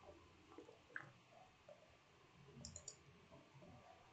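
Faint computer keyboard typing: scattered soft key clicks, with a quick run of sharper clicks a little before three seconds in.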